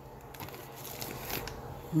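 Faint rustling and crinkling of plastic grocery bags and packaging as the groceries are handled, in a few brief patches, over a faint low hum.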